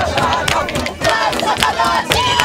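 A group of voices singing and shouting together over music, with frequent sharp percussive strikes.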